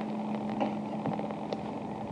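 Steady hum and hiss of an old recorded telephone line during a pause in the call, with a few faint clicks.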